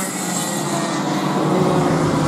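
Racing go-kart engine running at speed as a kart passes close by, a steady engine note over a broad rush of noise.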